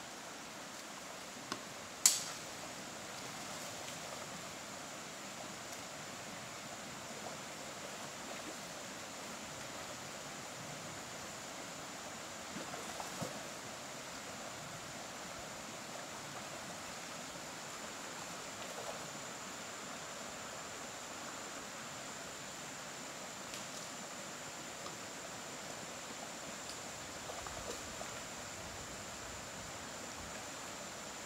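Faint, steady rush of a shallow mountain stream running over rocks, with a thin steady high tone above it and one sharp click about two seconds in.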